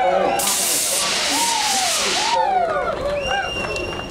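A pressurized spray hisses for about two seconds, starting about half a second in and strongest during its first half-second, over shouting and cheering voices.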